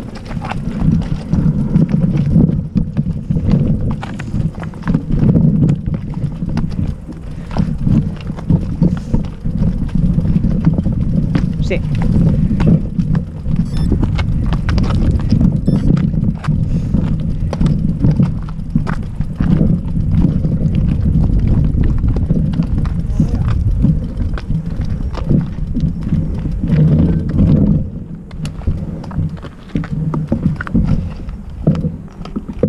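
Footsteps crunching on loose rock and gravel, with the rattle and knock of mountain bikes being pushed uphill over stony ground: a continuous run of irregular clatter.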